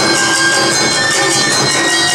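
Awa Odori festival band playing live: a bamboo flute holds high notes over fast, steady strikes of a small metal hand gong and drums, driving the dance rhythm.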